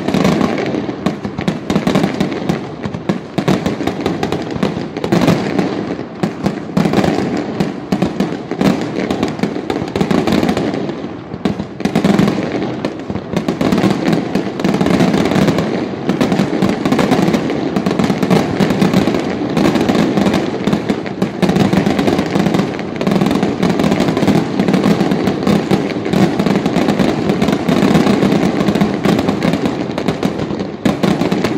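Aerial firework shells launching and bursting in a rapid, continuous barrage: a dense, unbroken run of loud bangs and crackles, with only a brief lull about eleven seconds in.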